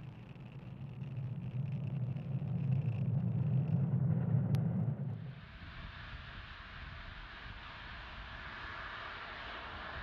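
Falcon 9 rocket engines during ascent: a deep rumble that grows louder, then cuts off abruptly about five seconds in. After that comes a quieter, steady hiss.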